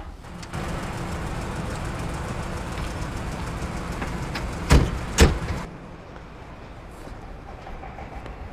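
A vehicle's engine running with a steady rumble, then two heavy thuds about half a second apart, a car door being shut. After the thuds the rumble drops to a quieter hum.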